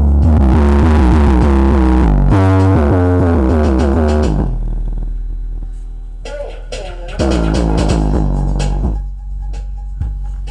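A bass test track playing through a 10-inch, 100-watt Raveland subwoofer, with heavy low bass and tones that slide downward. It is loud for the first four seconds, softer in the middle, and loud again from about seven to nine seconds in.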